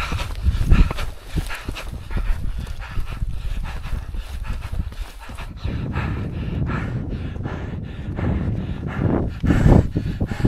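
A man panting hard and fast as he climbs uphill under a heavy pack, breath after breath, over a low rumble of wind on the microphone.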